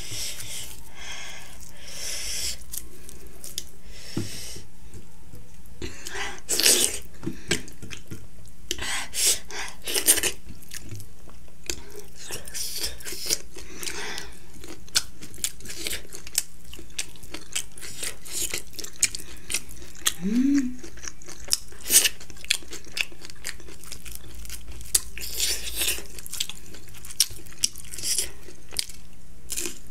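Close-miked chewing and crunching of a person eating by hand, with many short sharp mouth clicks and bites over a steady background hum. There is a short rising hum about two-thirds of the way through.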